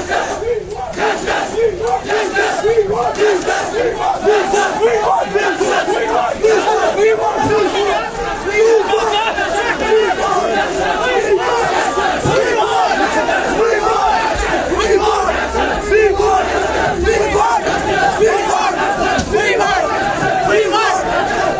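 A crowd of protesters shouting, many voices yelling over one another, loud and unbroken throughout.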